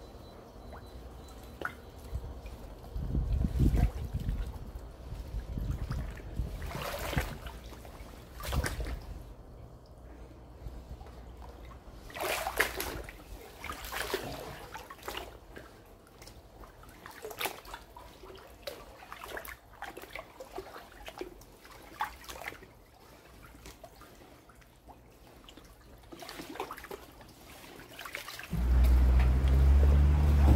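Floodwater sloshing and splashing in irregular swishes every second or two as someone wades through waist-deep water. A loud low rumble starts near the end.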